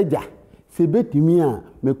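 A man speaking animatedly: speech only.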